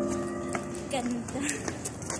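Background music ending about half a second in, followed by a few sharp footstep clicks on stairs and faint voices.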